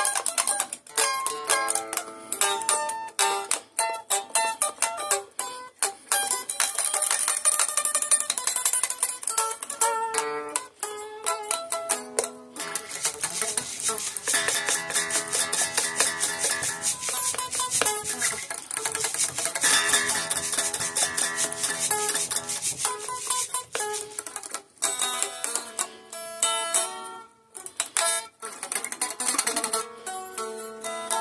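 Solo Stratocaster-style electric guitar: picked single notes and chord fills, then a long stretch of fast, even strumming in the middle, then picked notes again near the end.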